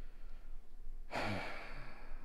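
A man's sigh: one breathy exhale with a little voice in it, starting about a second in and lasting under a second.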